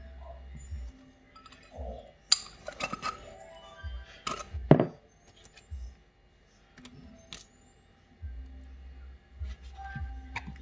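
Sharp clinks and knocks of a metal fork and a honey bottle against a ceramic bowl and a wooden cutting board. A cluster of them comes from about two to five seconds in, the loudest near five seconds, then a few single taps.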